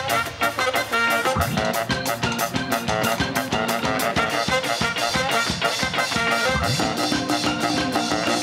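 A live ska-jazz band playing: a horn section of saxophones, trumpet and trombone over a drum kit's steady beat, with keyboard and guitar.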